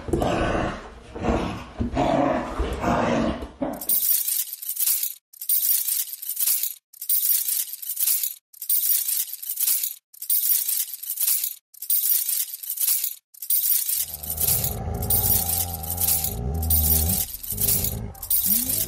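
A low growl for the first few seconds. Then a metal chain rattling and clinking in sharp bursts about once a second, joined near the end by a low steady drone.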